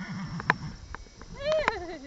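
A horse neighing: a pitched call about one and a half seconds in that rises briefly and then falls away, after a lower wavering sound at the start. A couple of sharp clicks come between them.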